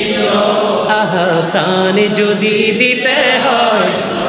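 A man singing a Bangla devotional song (gojol) in long held notes that bend in pitch.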